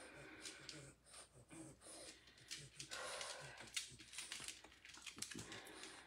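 Near silence: quiet room tone with faint scattered clicks and a soft hiss about three seconds in.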